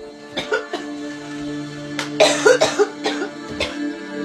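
A woman coughing after smoking a bowl of cannabis: a few short coughs, then a harsh fit in the middle, then a couple more. Steady background music plays underneath.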